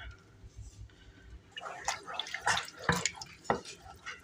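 Wooden spoon stirring flour into a pot of milk and melted butter: wet stirring with a few sharp knocks against the pot, starting about a second and a half in.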